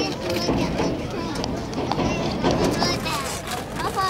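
People's voices talking over one another, with no clear words.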